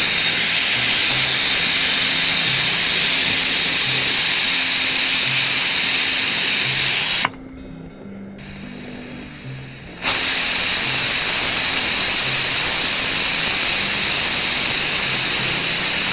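Aluminium pressure cooker of beef on a gas stove venting steam through its weight valve in a loud, continuous hiss: the cooker is at full pressure. About seven seconds in the hiss drops away for about three seconds, then resumes.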